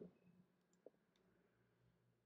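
Near silence with a single faint computer mouse click a little under a second in.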